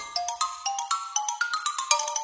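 Xylophone playing a solo run of short, quick notes that step up and down in pitch, with no other instruments under it.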